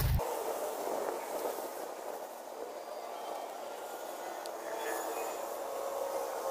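Steady, even background noise like a distant hiss or rumble, with no distinct events apart from a faint click a little past the middle.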